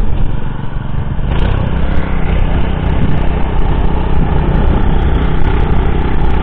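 Small petrol engine of a walk-behind tiller running steadily under load as its goose-foot tines churn damp soil, a little louder from about a second in.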